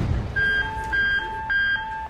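Firehouse alert tones sounding for a call-out: an electronic high tone and low tone alternating, each about a quarter second long, starting about a third of a second in.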